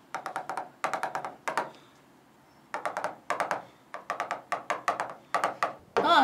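A stylus tapping against the glass of an interactive touch-screen board while drawing: rapid runs of sharp taps in four bursts, with short pauses between them.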